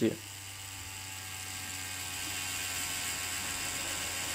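Cheyenne Thunder rotary tattoo machine running at maximum stroke, a steady motor whir, while its supply is turned down from 10 to 9 volts.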